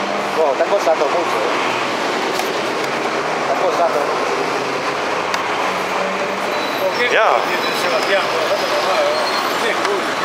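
Steady street traffic noise from passing vehicles, with scattered voices over it.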